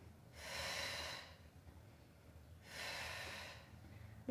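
A woman's audible breaths while she holds an abdominal crunch and taps a leg down and up: two breaths, each about a second long, the first just after the start and the second a little before the end.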